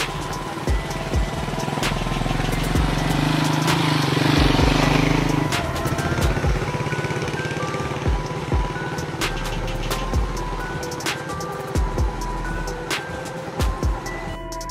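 Electronic background music with a steady beat. Under it, a small motorbike engine hums and swells as it passes close, loudest about four to five seconds in, then drops away.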